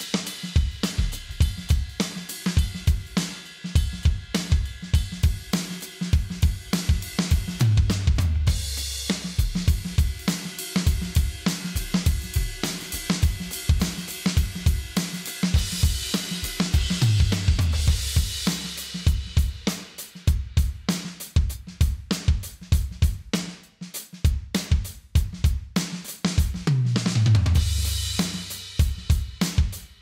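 A full drum kit groove on kick, snare and hi-hat, broken by tom fills running down in pitch into crash cymbals about every nine seconds. The sound is the sampled "Maple Mahogany Studio" kit of DW's software, triggered by a DWe wireless electronic drum set.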